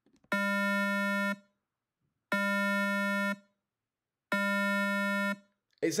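Synthesized 200 Hz square wave played as three separate tones, each about a second long and two seconds apart. The tone is steady, full, bright and buzzy.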